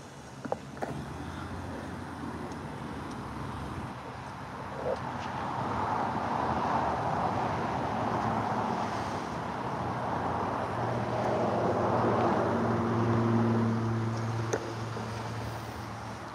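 Car traffic going by: tyre and engine noise swells over several seconds, then a steady low engine hum holds for a few seconds and fades near the end.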